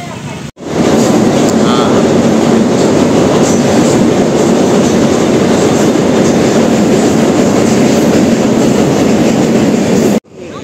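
Passenger train crossing a steel truss bridge overhead: a loud, steady rumble of wheels on the steel structure, starting abruptly about half a second in.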